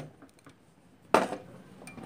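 A single sharp clink a little over a second in, with a short ring after it: a ceramic bowl holding a spiral wire whisk being set down on a stainless steel worktop.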